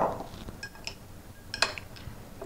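Metal spoon clinking against a glass salad bowl while the salad is tossed: a couple of faint ticks, then one sharp clink about one and a half seconds in.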